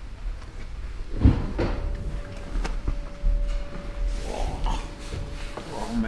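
A person climbing into a car's driver seat: a thump about a second in, then a few light clicks and rustles of body and upholstery. A faint steady tone runs from about two seconds in until near the end.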